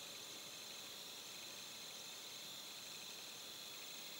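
Quiet room tone: a steady hiss with a thin, faint high-pitched whine, unchanging throughout.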